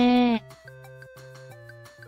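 A narrator's voice drawing out the last word of a sentence for under half a second, then quiet background music with a steady beat.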